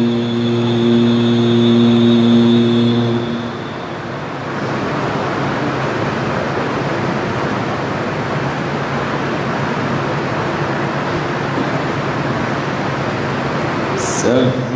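A man reciting the Quran holds one long chanted note for about three seconds before it fades out. A steady, loud rushing noise then fills the rest of the time.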